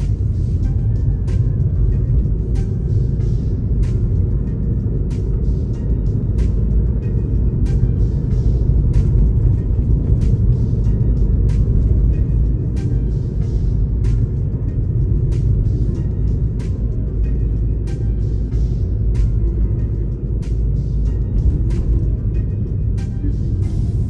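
Steady low road rumble inside a moving car, with music carrying a regular beat over it.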